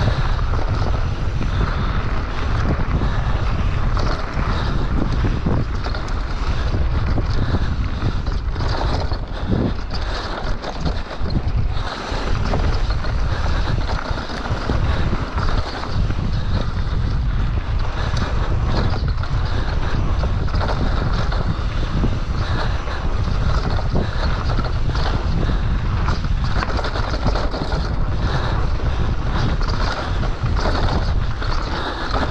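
Wind buffeting the microphone of a bike-mounted or helmet camera as a mountain bike descends a dirt singletrack at speed, with steady tyre noise on the dirt and scattered knocks and rattles from the bike over bumps and roots.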